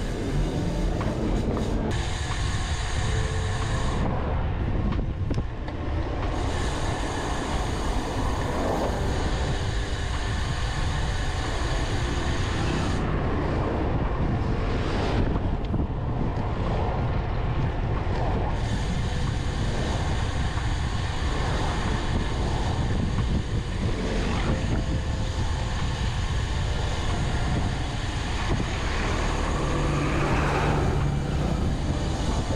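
Steady wind rush and road noise on a handlebar-mounted camera as a road bike rides through town traffic, with car and truck engines close by.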